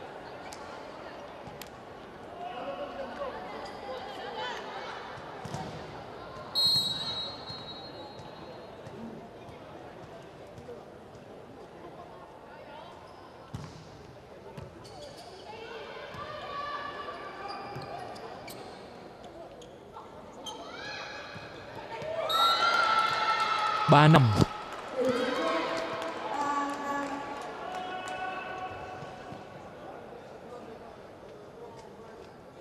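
Indoor volleyball match sounds: the ball being struck and landing as short knocks, with a referee's whistle blowing once about six seconds in. Players and spectators shout and call out at intervals, loudest around three-quarters of the way through.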